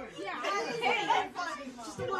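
Several people talking over one another at once: group chatter, with no single voice clear.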